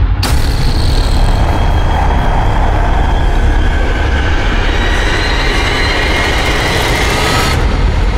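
Loud, steady rumbling noise with a hiss above it. It starts suddenly, faint rising tones come in partway through, and the hiss cuts off shortly before the end.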